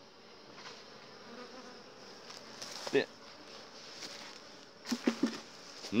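Honeybees buzzing faintly and steadily around a hive as its wooden lid is lifted off, with a brief knock about halfway and a few short knocks near the end.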